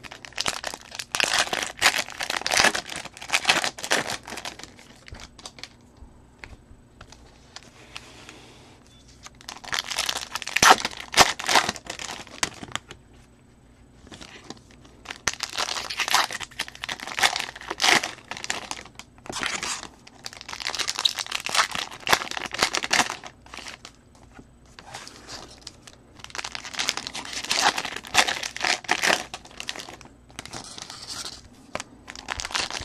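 Foil wrappers of Bowman baseball card packs being torn open and crinkled by hand, in five bursts of a few seconds each with short pauses between.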